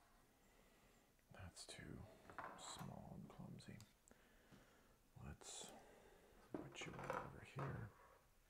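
A man speaking softly, close to a whisper, in a few short phrases with hissing s-sounds.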